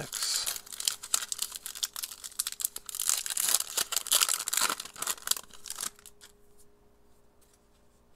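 A foil trading-card pack being torn open and crinkled by hand, a dense crackling and tearing that stops about six seconds in.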